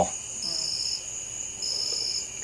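Insect chorus of the summer evening: a steady high-pitched trill with a second, slightly lower trill that pulses on and off about once a second.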